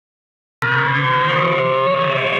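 Edited-in audio clip: after a moment of silence, a loud sound starts abruptly and holds, several steady pitches sounding together like a sustained dramatic chord or held voice.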